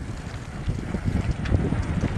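Wind buffeting the phone's microphone, an uneven low rumble.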